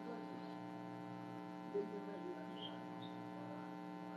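Steady electrical hum: a low buzz with many even overtones, holding constant throughout.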